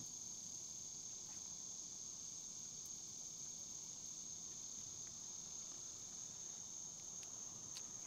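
Faint, steady, high-pitched chorus of insects such as crickets, unbroken throughout, with a couple of small clicks near the end.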